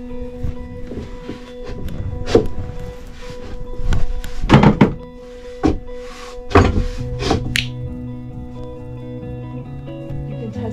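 Background music under a series of wooden knocks and thunks as wall boards are pushed and knocked into place. The loudest cluster comes about four to five seconds in.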